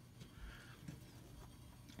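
Near silence: a faint, steady low hum of room tone.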